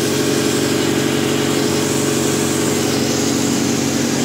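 Steady drone of the plasma-spraying booth's equipment running, with several steady low tones over a constant rushing noise.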